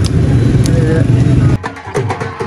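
Loud, low rumble of a road vehicle passing, which cuts off abruptly about one and a half seconds in. Background music with a clicking wood-block beat takes over.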